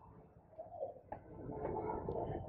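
Pigeon cooing faintly, a low soft call just under a second in followed by a longer, steadier low coo near the end.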